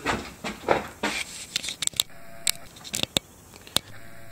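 Footsteps and scattered sharp clicks and knocks, with a faint short tone about halfway through.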